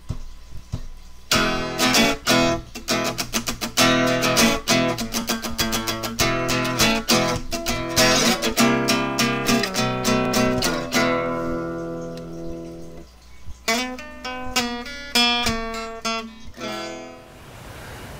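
Intro music: acoustic guitar strumming and picking, breaking off briefly about two-thirds of the way through before a final few strums.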